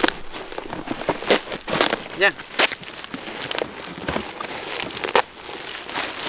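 Thin black plastic bag crinkling and crackling as it is pulled and torn open by hand, in irregular scrunches and rips.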